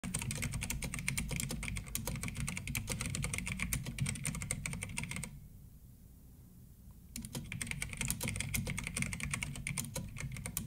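Rapid typing on a computer keyboard, a fast run of key clicks that stops for about two seconds midway, then starts again.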